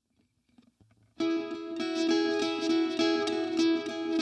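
Guitar starting to play suddenly about a second in after near silence: repeated picked notes at about four or five a second, ringing on.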